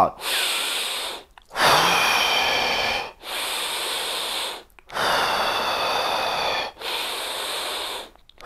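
A man doing deep paced breath work into a close lapel microphone. Loud, slow breaths alternate between in through the nose and out through the mouth, about a second and a half each, five in all. A slight whistle rides on two of them.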